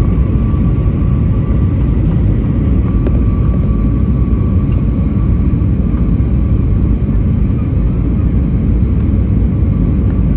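Steady cabin noise of an Airbus A320-family jet airliner descending on approach to land: a loud low rumble of engines and airflow, heard from inside the cabin, with a faint steady whine above it.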